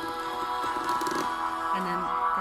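Sustained electronic tones from a homemade touch-played instrument, copper-tape pads on a flexible plastic tube, sounding as the pads are touched: several notes layered, with a new lower note coming in near the end.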